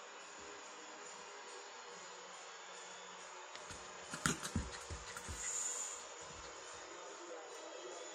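Small terrier playing roughly with a ball on carpet: a short cluster of soft thumps and scuffles about four seconds in, over a steady background hiss.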